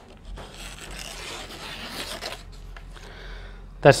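A sharp folding knife's blade slicing down through paper in a sharpness test. There is a scratchy, rasping cut for about two seconds, then a few fainter scrapes.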